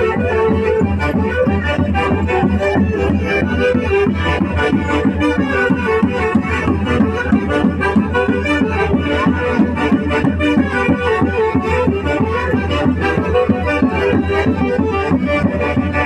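Live street band of saxophones and drums playing dance music, the saxophones in a reedy chorus over a steady drum beat.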